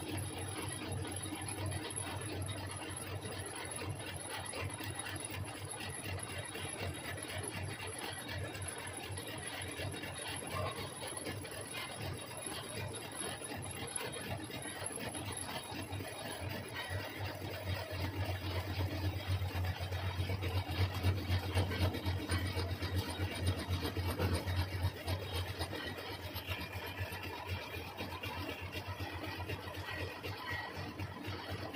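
Metal lathe running, with a cutting tool turning down a steel shaft: a steady machine hum under a continuous rattly cutting noise. The hum and cutting noise grow louder in the second half, then ease off near the end.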